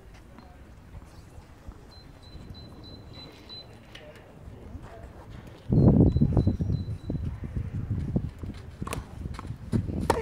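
Tennis rally on a clay court, with sharp racket-on-ball hits near the end. From about six seconds in, a sudden loud low rumble sits on the microphone and slowly dies away.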